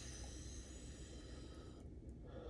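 A man blowing out one long steady breath through pursed lips, stopping sharply after nearly two seconds. It is a reaction to the burning heat of the super-hot chili chip he has just eaten.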